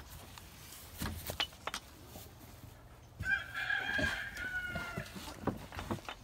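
A rooster crows once, starting about three seconds in: one long pitched call that falls off at its end. A few knocks and clicks come before it.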